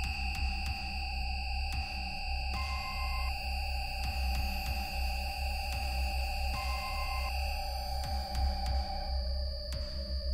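Dark electronic synthesizer music: steady high sustained tones over a deep, pulsing low drone, with a short two-note beep that repeats about every four seconds.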